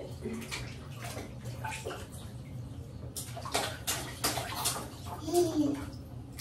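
Bath water splashing and sloshing in a baby bathtub while an infant is bathed, with a run of louder splashes in the second half. A short voice sound comes near the end.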